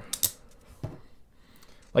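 Small clicks and rattles of a Bon Musica violin shoulder rest's metal bracket and fittings being put back together by hand: a few quick clicks just after the start and another about a second in.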